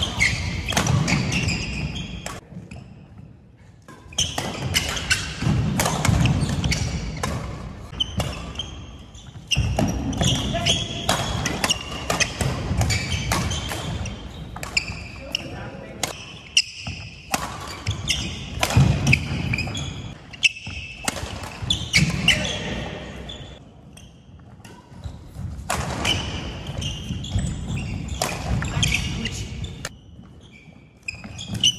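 Doubles badminton rallies: rackets striking the shuttlecock in quick sharp hits, with players' footsteps on the wooden court floor, broken by short pauses between points.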